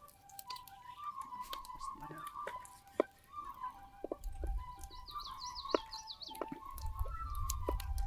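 Soft flute music, a slow melody of held notes, over scattered sharp clicks of a knife cutting raw chicken on a wooden board. A high warbling bird call comes about five seconds in.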